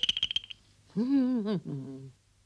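A rapid run of clicks over a high steady tone, stopping about half a second in. Then a wordless cartoon voice in two short phrases, its pitch rising and falling.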